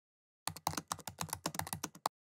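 Fast typing on a computer keyboard: a quick run of key clicks starting about half a second in, a password being entered at a lock screen.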